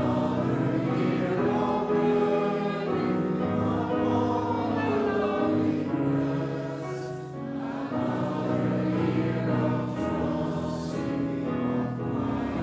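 Church congregation singing a hymn together, sustained notes moving from line to line, with a short breath between lines about seven seconds in.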